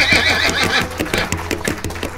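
Horse sounds: a whinny that ends under a second in, then hooves clip-clopping at a gallop.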